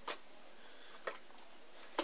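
Playing cards being handled and set down on a table: three light taps about a second apart over a steady hiss.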